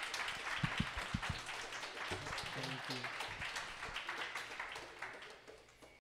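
Audience applauding, thinning out and fading toward the end. There are a few low thumps about a second in and faint voices underneath.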